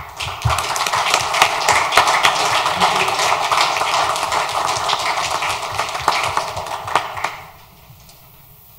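Audience applauding: many hands clapping at once, dying away about seven and a half seconds in.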